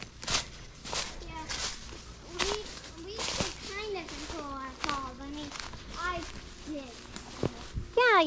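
Footsteps of people walking outdoors, in a steady run of soft steps, with quiet talking in the background.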